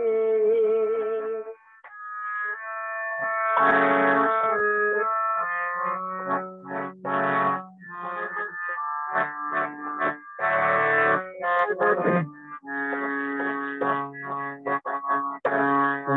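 Devotional music: a singer with a keyboard instrument playing sustained notes, with a short break about two seconds in.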